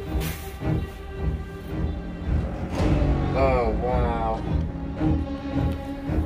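Tense, ominous background music with held tones and low, regular drum beats. A voice sounds briefly just past the middle.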